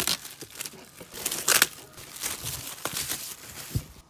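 Clear plastic shrink-wrap being torn and crinkled off a large hardcover book: irregular rustling and tearing, loudest about a second and a half in.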